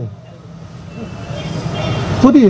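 Road traffic noise from a passing motor vehicle, a steady rumble that grows gradually louder.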